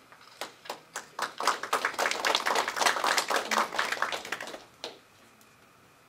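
A group of people clapping. It starts with a few scattered claps, builds into dense applause about a second and a half in, and dies away about five seconds in.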